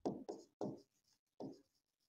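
Stylus writing on the glass face of an interactive display board: four short, faint strokes, the last about a second and a half in.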